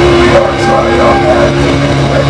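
Death metal band playing live and loud: heavily distorted guitars and bass holding a low sustained chord under dense drumming, with a growled vocal over it.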